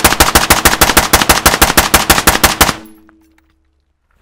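A rifle firing one long rapid burst, about nine evenly spaced shots a second for nearly three seconds, then cutting off.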